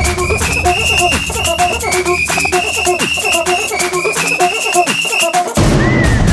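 Upbeat electronic background music with a steady beat and a repeating melody. The bass drops out about five seconds in and then comes back.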